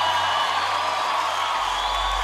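Crowd applause and cheering from a live gospel worship recording, over soft sustained music at the start of a song. A deep bass note comes in about three-quarters of the way through.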